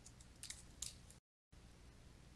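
Near silence with two faint, short clicks about a third of a second apart, then the sound cuts out entirely for a moment.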